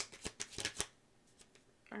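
Tarot cards being shuffled by hand: a quick run of crisp card flicks that stops short a little under a second in.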